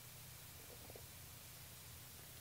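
Near silence: room tone with a faint steady low hum and hiss.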